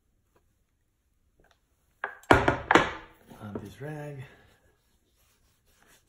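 Two sharp knocks about half a second apart, around two seconds in: a metal tin of Venetian shoe cream being set down on a wooden tabletop. A few quiet seconds come before them.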